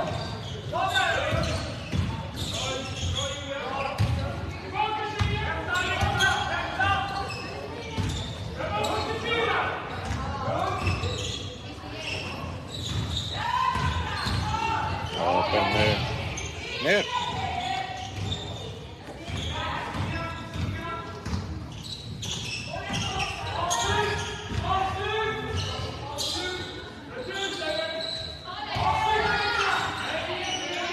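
A basketball game in a large sports hall: the ball bouncing on the wooden court and shoes on the floor, with players and spectators calling out almost all the way through.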